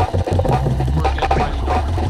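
Bass-heavy music from the mix: a stepping bass line under a busy beat, with a brief dropout just after it begins.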